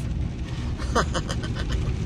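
Steady low rumble inside a pickup truck's cab.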